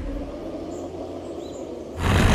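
Forest ambience: a few short, high bird chirps over a low, steady rumble.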